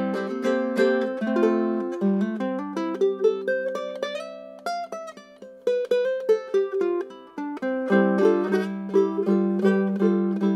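A tenor ukulele with a Port Orford cedar top and walnut back and sides, played by plucking. It opens with chords, thins to a single-note melody through the middle, and returns to fuller, lower chords from about eight seconds in.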